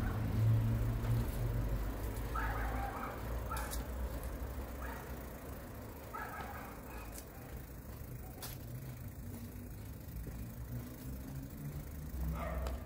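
Quiet city street ambience: a steady low rumble of distant traffic, with a few short higher-pitched sounds in the first half and scattered faint clicks.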